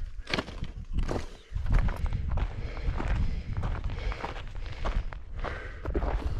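A runner's footsteps crunching on loose rock and gravel on a steep mountain trail: an irregular run of short scuffs and crunches over a steady low rumble.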